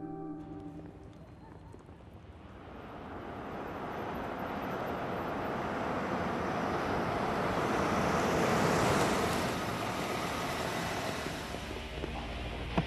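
Cars driving up and stopping: an even rushing noise of engines and tyres that swells over several seconds, peaks late and then eases off.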